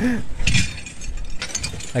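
Hands rummaging through broken ceramic dishes and metal cutlery wrapped in plastic: scattered clicks and clinks with rustling, after the tail of a laugh at the start.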